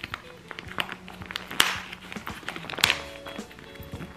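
Clear plastic packaging crinkling and crackling as it is handled, in irregular bursts, with the two loudest rustles about one and a half seconds in and just before the three-second mark. Background music plays underneath.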